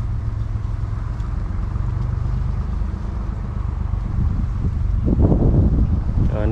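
Steady low rumble of a running engine.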